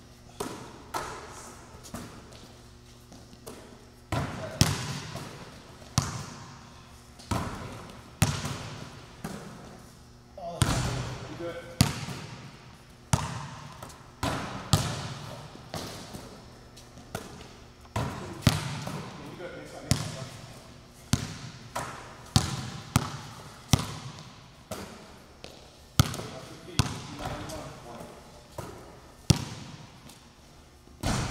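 Basketballs bouncing on the gym floor and striking the rim and backboard during shooting drills, a sharp impact about once a second, each ringing out in the hall's echo.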